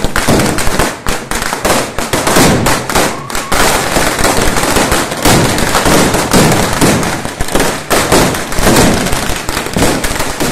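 Firecrackers going off in a rapid, continuous volley of sharp cracks and bangs.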